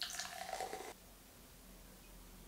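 Carbonated soda poured from an aluminium can into a drinking glass, splashing and fizzing for about a second before the pour stops suddenly.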